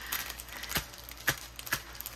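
Plastic packaging of a diamond painting kit rustling faintly as it is handled, with three light clicks spread through the moment.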